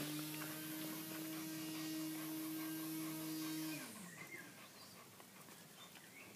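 A small motor hums at a steady pitch. It rises as it starts, then winds down and stops about four seconds in.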